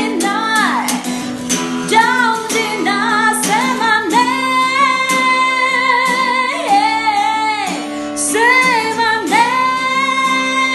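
A woman singing a soft ballad with long held notes over a Taylor acoustic guitar.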